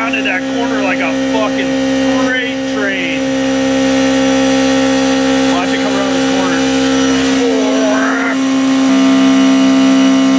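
CNC vertical milling machine cutting a pocket in 1018 steel with a 5/8-inch carbide roughing end mill under flood coolant: a steady machine drone at one pitch with overtones.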